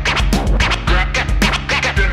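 Hip-hop instrumental beat: a steady drum pattern over deep bass, with scratching sounds swooping over it.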